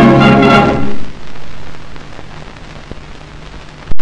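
Music from an old film soundtrack closes on a held final chord and cuts off about a second in. Then there is only the soundtrack's steady hiss with a faint low hum, and a sharp click just before the end.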